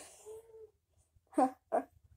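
Two short, high vocal sounds from a child's voice about a second and a half in, after a faint brief hum, with no words.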